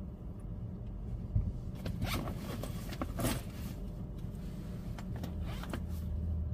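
A backpack zipper drawn in three short rasping strokes, about two seconds in, about three seconds in and near the end, over the low steady hum of a car cabin.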